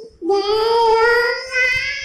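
A young girl singing an Islamic gojol (naat) unaccompanied. She holds one long steady note for about a second and a half, then starts the next note.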